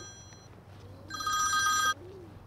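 Mobile phone ringing: the tail of one ring fades out, then a second ring starts about a second in and cuts off suddenly just before the end.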